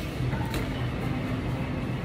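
Supermarket drinks-aisle background: a steady low hum from the refrigerated display coolers, with a light click about half a second in.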